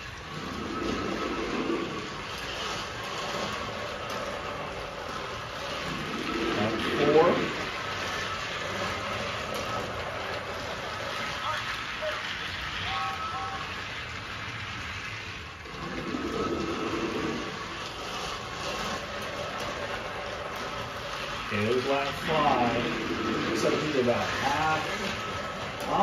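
Battery-powered Thomas & Friends toy engines running on plastic track: a steady whirring rattle from their small motors and wheels. A short stretch of voice comes about seven seconds in, and more near the end.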